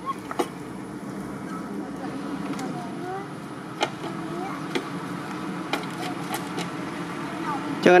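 Outdoor background of distant people's voices over a steady low hum, with a few sharp clicks. A man's voice starts loudly near the end.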